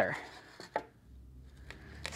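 Metal hand soil blocker packed with wet potting mix being set down on a plastic seed tray: one short knock a little under a second in, then a faint tick near the end.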